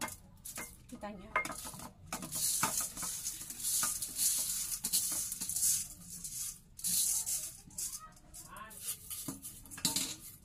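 Washed mung beans rattling and scraping in a stainless steel colander as it is shaken and tipped out into a glass bowl, in a run of short bursts with occasional metal clinks.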